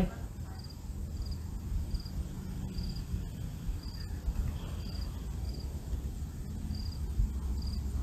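Crickets chirping: short, high, pulsed chirps repeating about once a second over a low, steady outdoor rumble.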